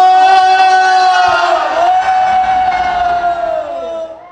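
A man's voice holding one long, high sung note into a microphone over a PA system, dipping slightly in pitch partway through and trailing off near the end.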